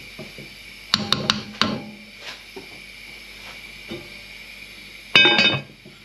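A wooden spoon knocks a few times against the rim of a cast-iron casserole pot about a second in. Near the end the heavy lid is set down on the pot with a loud, ringing clank.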